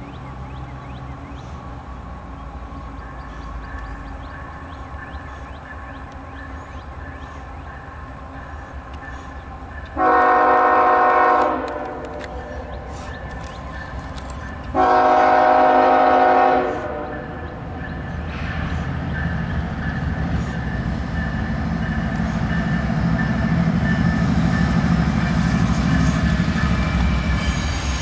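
Diesel freight locomotive's air horn sounding two long blasts, about ten and fifteen seconds in. Afterward the approaching train's noise grows steadily louder.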